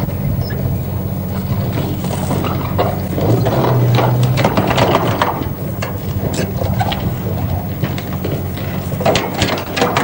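Rail-recovery train working along the line, with repeated metallic clanks and scraping as rails are dragged from the sleepers, over a steady low drone. The clanking is busiest a few seconds in and again near the end.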